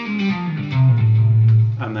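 Electric guitar played legato with the fretting hand on a three-note-per-string pattern (frets five, six and eight), hammering on and pulling off. A few quick notes are followed by a low note that rings for about a second.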